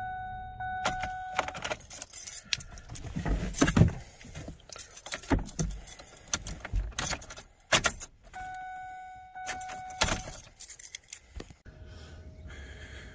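Keys jangling and clicking at the ignition of a Ford Ranger that will not start, with no engine cranking. A steady electronic warning tone sounds twice, once at the start and again about 8 seconds in, each fading away over a second or so.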